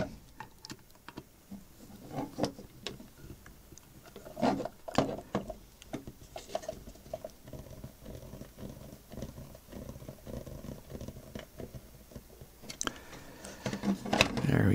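Small screws being driven by hand with a screwdriver into a 3D-printed plastic plate: faint, irregular clicks, scrapes and plastic creaks as the parts are handled, busiest about four to five seconds in.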